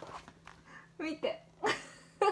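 Three short, high-pitched vocal yelps in quick succession, about a second in and again a little later.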